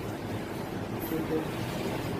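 Steady background noise, with a faint voice briefly a little past halfway.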